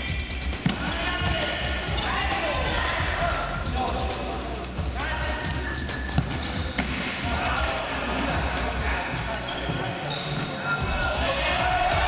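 Futsal ball being kicked and bouncing on a hard indoor court, with players' voices shouting. Two sharp kicks stand out, one about a second in and a louder one about six seconds in.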